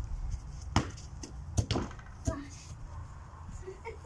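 Three sharp thuds, the loudest in the middle, from a football being kicked in a bicycle-kick attempt and hitting the ground, over a steady low rumble.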